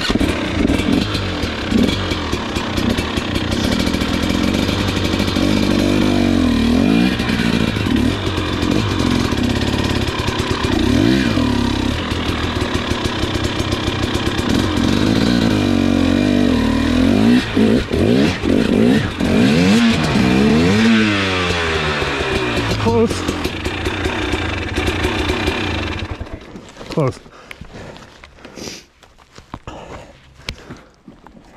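KTM 300 XC two-stroke enduro engine revving hard under load on a steep climb, the revs rising and falling again and again as the rear wheel hunts for traction. About 26 seconds in the engine sound drops away, followed by clattering and a few knocks as the bike goes down on the rocks.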